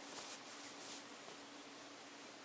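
Faint rustling of a thin stretchy fabric tube scarf being handled and stretched by hands, mostly in the first second, over a steady hiss and a faint low hum.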